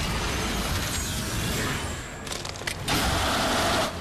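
Cartoon alien-transformation sound effects: a steady rushing noise with a few sharp clicks a little past two seconds. A louder burst of noise comes about three seconds in and cuts off suddenly just before the end.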